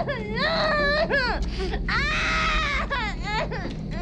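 A woman crying and whimpering in fear: high, wavering sobbing cries that rise and fall, over a low steady hum in the film soundtrack. It all cuts off abruptly at the end.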